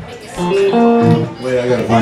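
Electric guitar picking a few loose single notes and a short phrase between songs, with voices over it.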